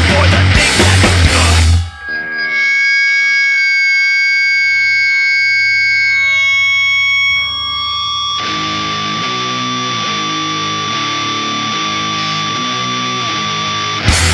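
Fast hardcore punk band music that breaks off about two seconds in into long, ringing notes from a distorted electric guitar. A little past the middle, a slow repeating guitar figure starts under a steady high ringing tone.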